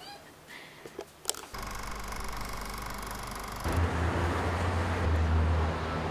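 A few faint clicks, then from about a second and a half in the steady low rumble of street traffic, which gets louder and deeper a little past midway.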